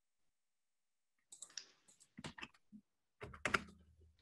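Typing on a computer keyboard: after about a second of silence, a run of irregular keystroke clicks.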